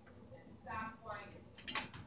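Metal hand tools clicking against wires at a metal junction box, with one sharp metallic click near the end.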